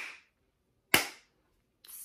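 Two sharp hand claps, about a second apart.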